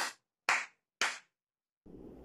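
Three hand claps, evenly spaced about half a second apart.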